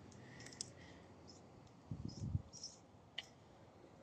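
Blue painter's tape being peeled off painted car bodywork: faint scattered clicks and crackles, with a short, soft, low sound about two seconds in.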